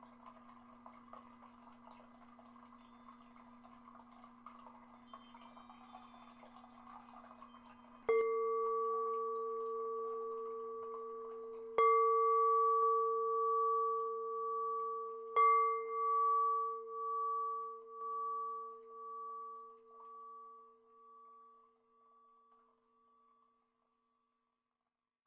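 A singing bowl struck three times, about four seconds apart, each strike ringing on with a slow pulsing wobble and dying away near the end. Before the first strike there is only a faint steady low hum.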